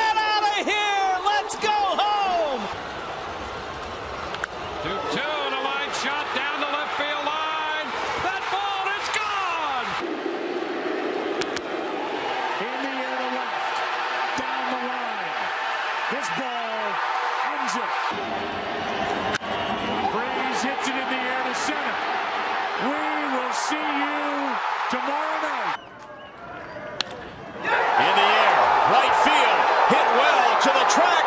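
Baseball broadcast audio: an announcer's voice over ballpark crowd noise, in several short clips cut abruptly one after another. The crowd is loudest in the last two seconds.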